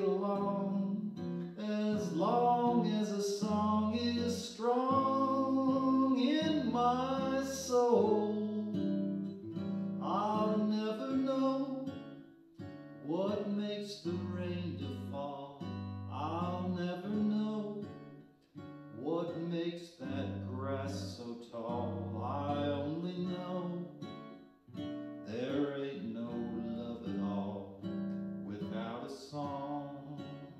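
Acoustic guitar strummed and picked as accompaniment to a man singing a slow ballad melody, the voice held and wavering on long notes.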